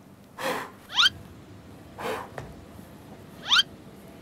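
A man's exaggerated mock gasps: two short sharp breaths, each followed by a quick squeak that slides steeply upward in pitch.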